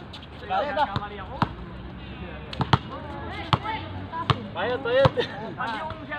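A basketball bouncing on an outdoor concrete court, a dozen or so sharp knocks at irregular intervals, with players shouting in between.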